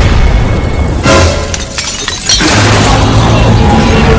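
Glass-shattering sound effect over music: a crash of breaking glass about a second in, after which the music runs on loud over a deep steady drone.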